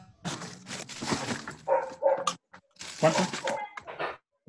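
A dog barking, heard over a video-call connection, after about a second and a half of noisy crackle.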